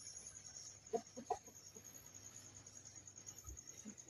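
Chickens clucking faintly: a few short clucks about a second in, then quiet.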